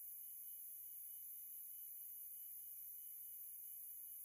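A faint, steady hiss with no other sound: the broadcast's background noise.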